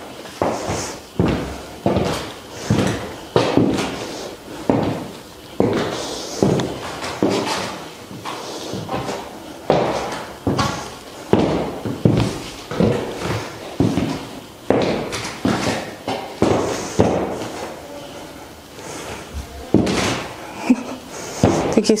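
Metal-tipped heels of tall leather high-heeled boots clicking on a hard floor with each step, at a steady walk of about three steps every two seconds. Each click rings briefly in a large, echoing room.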